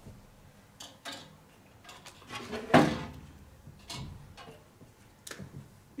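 Small clicks and knocks of whiteboard markers being picked up and uncapped, as a dried-out marker is swapped for another, with a louder clatter about three seconds in.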